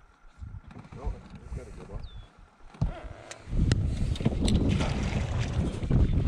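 Wind rumbling on the microphone, starting suddenly and loudly about three and a half seconds in, after a few sharp clicks.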